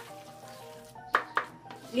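Wooden spatula stirring thick glutinous rice in coconut milk and sugar in a metal pot as it cooks down over medium heat, with two short scrapes a little after a second in.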